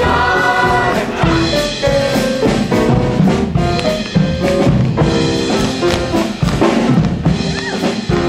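Instrumental show music with a busy drum kit: the dance break of a jazzy stage number.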